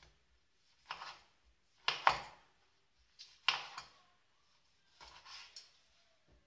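Chef's knife slicing a tomato on a cutting board: several separate cuts about a second apart, each a short sharp stroke of the blade onto the board.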